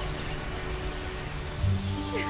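Soundtrack sound bed: a steady rushing, rain-like noise under a low sustained musical drone, with a deeper low note swelling in near the end as the music builds.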